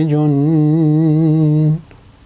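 A man's voice singing an unaccompanied Arabic nasheed, holding one long note with a slight waver. The note breaks off near the end.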